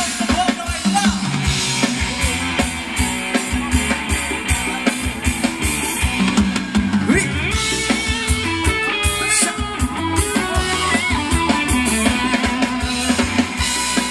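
Live ramwong band playing loud amplified music through the PA: a steady drum-kit beat with bass and electric guitar, with a melody line coming up more strongly about halfway through.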